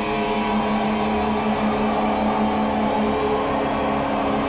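Live hard rock: a long, held, distorted electric guitar chord rings steadily over drums rumbling beneath.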